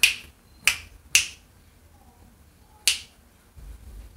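Four sharp, snappy clicks: three within the first second or so, then a fourth near the three-second mark.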